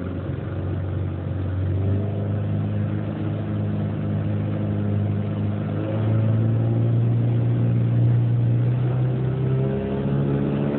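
Small tiller-steered outboard motor driving an aluminium boat under way, its pitch stepping up about two seconds in and again about six seconds in as it is throttled up, getting louder from there.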